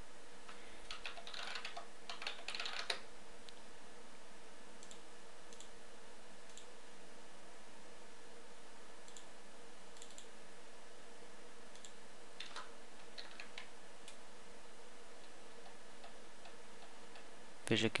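A short burst of computer keyboard typing, then scattered mouse clicks, over a steady background hiss.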